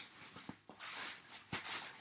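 Plastic shopping bag rustling as it is picked up and handled, with two light knocks about a second apart.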